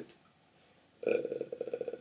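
A short pause of near silence, then about a second in a man's drawn-out, creaky hesitation sound, "uh", before he answers.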